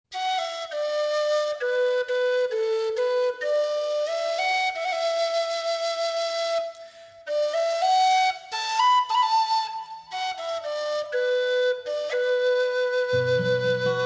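Background music: a solo flute playing a slow melody of held, stepping notes, with a lower accompaniment coming in near the end.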